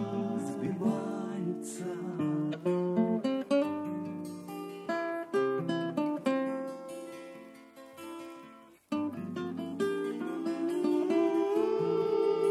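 Soviet 1970s VIA pop-rock playing from a vinyl record: an instrumental passage of plucked guitar notes that die away almost to silence about nine seconds in, then sustained chords come back in.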